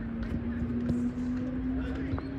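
Light taps of a soccer ball being dribbled on artificial turf, over voices and a steady low tone that rises slightly in pitch.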